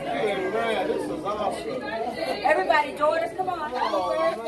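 Several people talking over one another: party chatter, with higher, excited voices in the second half.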